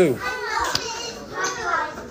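Young children's voices, talking and playing in the background, with a child's voice answering.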